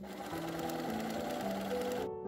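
Domestic sewing machine running steadily, stitching through layers of fabric. Soft piano music plays behind it.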